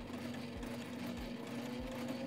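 Sailrite Ultrafeed LSC walking-foot sewing machine stitching through fabric: a steady motor hum with a low, regular beat of the needle mechanism, somewhat under two beats a second.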